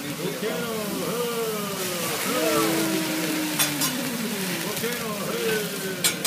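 Food sizzling on a hibachi (teppanyaki) griddle under voices, with a few sharp clicks about halfway through.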